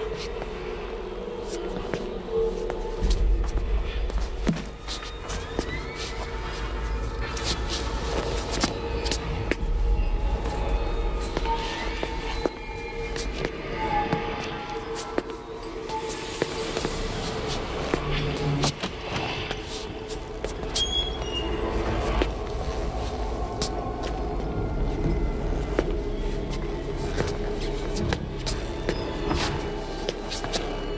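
Tense film score with a held low drone and rumble, overlaid by frequent short knocks and clicks.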